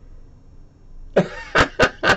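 A man coughing: a sudden loud cough about a second in, then two or three short sharp coughs in quick succession, over a low room background.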